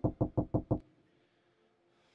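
Five quick knuckle knocks in a rapid run, about five a second, over less than a second, as if rapping on the other side of the screen.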